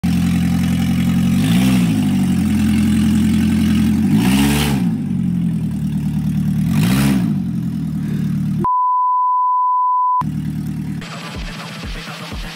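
Car engine idling with three quick revs, each rising and falling back within under a second. A steady high beep tone follows for about a second and a half, then the engine idle returns.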